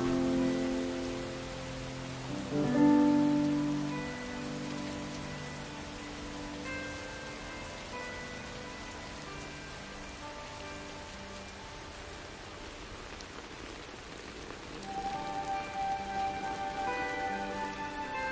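Steady rain falling, with soft, sparse music over it. Low held notes sound at the start and again about two and a half seconds in. Scattered higher notes follow, and more notes gather near the end.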